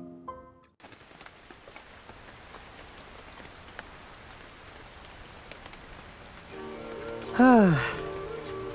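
Steady rain falling on a street, a soft even hiss. Near the end, music comes in and a man's voice calls out a long sliding "haa".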